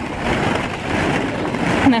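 Plastic ball-pit balls rustling and knocking against each other close to the microphone as someone wades through them, a steady jostling noise. A voice starts to speak near the end.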